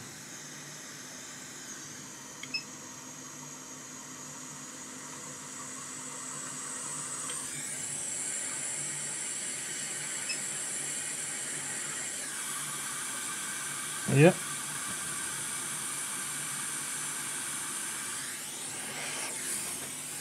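Hot-air rework gun blowing a steady hiss of air as it melts a hot glue stick over a laptop battery connector. The airflow gets louder and brighter about seven seconds in.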